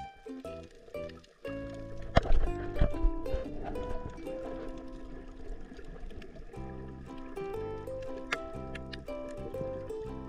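Background music with a melody of stepping notes. About two seconds in, a short burst of heavy low thumps stands out as the loudest sound.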